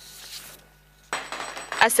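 A small group applauding, breaking out suddenly about halfway through, with a voice starting to speak over the clapping near the end.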